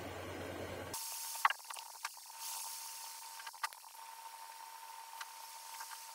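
Faint hiss and a steady thin whine from an old laptop booting from its mechanical hard drive, with a few soft clicks scattered through.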